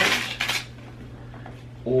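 A short scraping rustle, about half a second long, as a small gift box holding a watch is handled and opened, followed by faint handling sounds.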